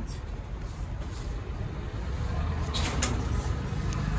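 Silk dress fabric rustling as it is gathered and lifted off the counter, with a few sharper swishes about three seconds in, over a steady low rumble.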